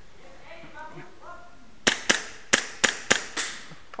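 Airsoft gun firing six shots in a quick, slightly uneven string of about a second and a half, starting about two seconds in.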